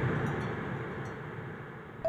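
A shimmering, chime-like wash dying away steadily: the fading tail of a magical sparkle sound effect.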